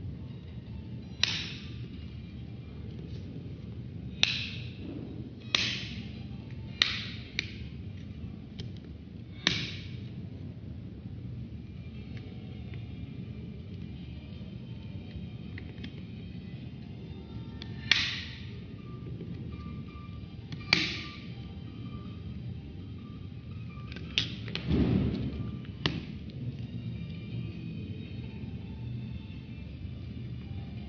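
Plastic back cover of an Acer Z150 smartphone being pried off along its seam: a series of sharp, separate snapping clicks as its retaining clips let go one by one, with a longer scraping clatter late on as the cover comes away.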